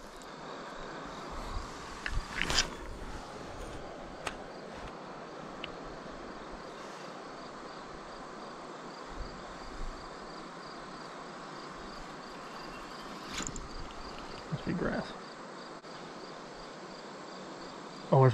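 Crickets chirping in a steady, even rhythm over a soft, constant hiss, with a few sharp clicks scattered through.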